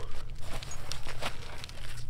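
Nylon webbing war belt and its loaded pouches rustling, with small scrapes and ticks as they are handled and turned over, over a steady low hum.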